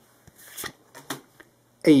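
Magic: The Gathering cards sliding against each other in the hand, a few short rustles as the next card is moved to the front of the stack.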